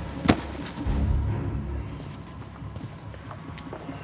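A single sharp knock about a third of a second in, then a low rumble that fades, with a few faint ticks later on: film sound effects and a low background drone.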